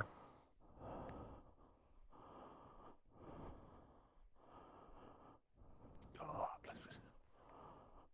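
Faint breathing picked up close on a helmet microphone, a regular run of soft breaths with one louder breath about six seconds in.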